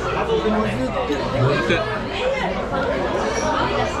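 Indistinct talking and chatter, voices at a steady level with no clear words.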